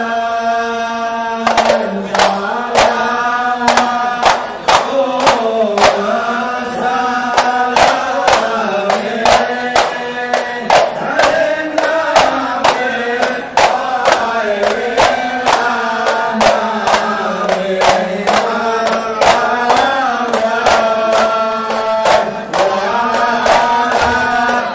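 Voices chanting a slow, sustained devotional melody in unison, accompanied by frequent sharp hand-drum strikes.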